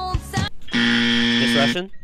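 A game-show buzzer sounds once, a loud steady buzz about a second long, starting just after a recorded song cuts off: a contestant buzzing in to answer.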